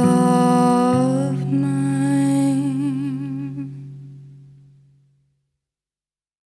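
A woman's voice holding a long final note with vibrato over a sustained acoustic guitar chord. Both fade out together, dying away to silence about five seconds in.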